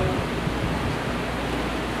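Steady, even hiss of room noise with a low hum underneath, heard during a pause in speech.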